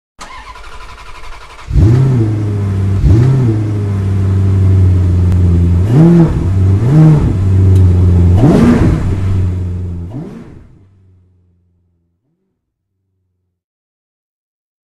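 A car engine catches about two seconds in, idles and is revved in several quick blips, then fades out.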